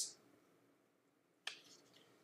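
Near silence in a small room, broken once by a single short, sharp click about one and a half seconds in.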